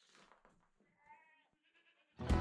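A goat bleating faintly about a second in, after a faint rustle at the start.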